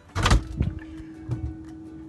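Stainless French-door refrigerator door pulled open with a sudden thump, then a softer knock a little over a second in, followed by a steady low hum.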